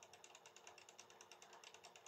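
Near silence: faint room tone with a light, fast, even ticking.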